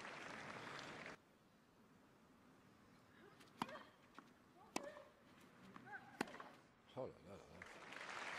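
Crowd noise that cuts off abruptly about a second in. Then a tennis ball is struck back and forth by rackets in a baseline rally: three sharp hits a little over a second apart, with faint voices between them.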